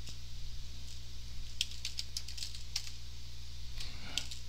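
Computer keyboard keys being typed, a handful of separate clicking keystrokes, over a steady low electrical hum.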